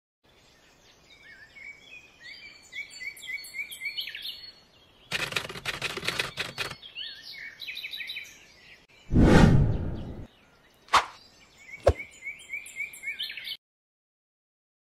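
Birds chirping in short repeated rising calls through most of the clip, broken by a rattling burst of clicks about five seconds in, a loud rushing noise with a deep low end lasting about a second near nine seconds, and two sharp clicks a second apart; it cuts to silence just before the end.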